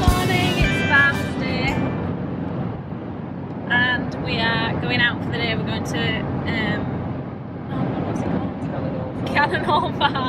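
Steady road and engine noise inside a moving car's cabin, with a woman talking in short bursts over it.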